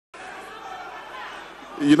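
Sound cuts in abruptly with the murmur of an audience chattering in a large hall. Near the end a man's voice starts speaking loudly over it.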